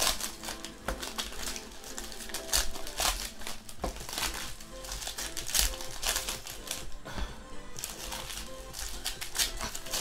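Plastic trading-card pack wrappers crinkling and crackling in the hands as packs of basketball cards are torn open and handled, in quick irregular crackles, over steady background music.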